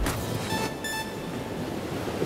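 Steady rushing noise of ocean surf with wind on the microphone.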